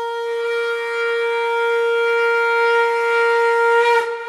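Conch shell (shankh) blown in one long, steady note that swells gradually louder and stops just at the end, the opening blast of a recorded song.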